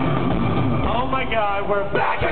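Live concert sound recorded from the audience: a loud, steady low rumble from the stage sound system, then about a second in a voice calling out over it, its pitch sliding up and down.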